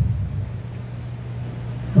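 A steady low hum in a pause in the preaching, with a man's voice trailing off at the start and an 'uh' just at the end.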